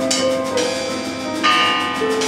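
Free-improvised duo of grand piano and drum kit: held piano notes under scattered percussion strikes, with a bright, bell-like ringing strike about one and a half seconds in.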